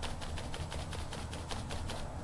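Foam brush dabbing and stroking white paint onto a wooden picture frame: a quick run of short brushing strokes, several a second.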